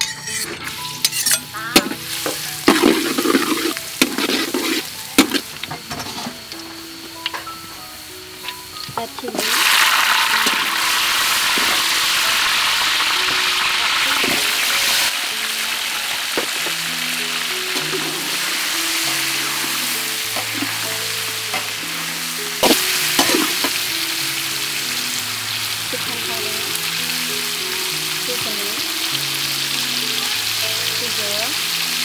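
Cowfish fillets, garlic and chilies frying in oil in a steel wok, stirred with a metal spatula. Light clicks and scrapes at first, then a loud steady sizzle from about nine seconds in, with a sharp knock of the spatula on the wok a little past the middle.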